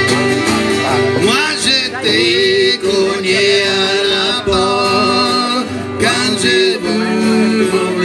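Live Cajun band playing a tune on diatonic button accordion, fiddle and strummed acoustic guitar, the accordion's sustained notes carrying the melody.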